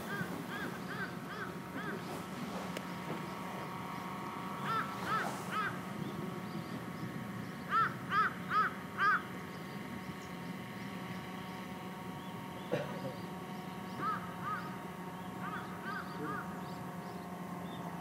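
A bird calling in short groups of three or four repeated arched calls, the loudest group about eight seconds in, over a steady low hum of quiet outdoor ambience. A single faint click comes about thirteen seconds in.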